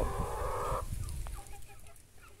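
Backyard hens vocalising: one hen calls for nearly a second, then only faint, scattered clucks.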